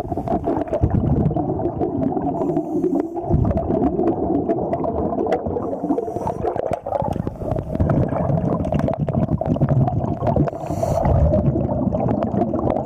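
Underwater sound of a diver scrubbing marine growth off a boat hull, heard through a camera housing: a continuous muffled rumbling and scraping with many small clicks. A few short hissing bursts come about every three to four seconds.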